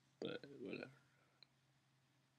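A man's short wordless vocal sound, under a second long, then a faint click.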